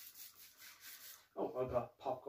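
Quick rubbing strokes, about five a second, from a wipe rubbed over plastic shopping packaging by gloved hands. A man's voice comes in near the end.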